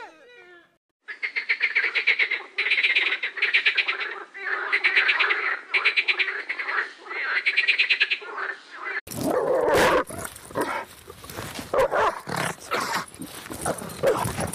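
Animal calls: a rapid trill of many pulses a second, repeated in bouts of about a second with short gaps. About nine seconds in, it cuts suddenly to rougher, noisier animal sounds.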